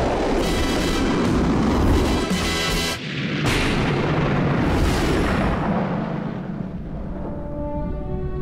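A loud, booming rocket-launch sound effect, the electromagnetic launcher's thunderclap. It dies down about three seconds in, swells again twice and then fades, as held orchestral notes come in near the end.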